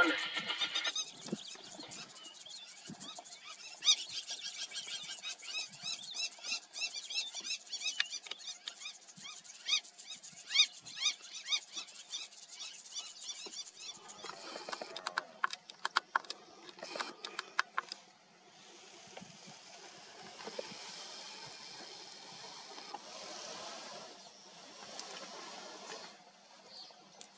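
Open-grassland ambience: rapid, repeated high-pitched bird calls through the first half, then a run of sharp clicks, then a steady hiss through the last third.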